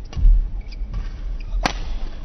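Badminton racket striking a shuttlecock in a rally, with one sharp crack about one and a half seconds in and a fainter hit near the start. Dull low thuds of the players' footwork on the court come early on.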